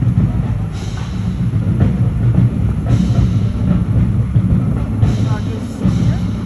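Marching band drumline playing a driving cadence, with heavy bass drums and a bright crash about every two seconds.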